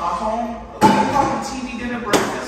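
A sharp clatter of dishes and the dishwasher rack about a second in, dying away over about a second.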